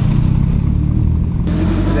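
Lotus sports car's engine running as the car drives slowly, heard from inside the cabin as a steady low engine note. A single sharp click about one and a half seconds in.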